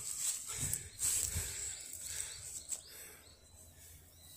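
Footsteps and rustling through dry grass and brush, irregular, growing quieter in the second half.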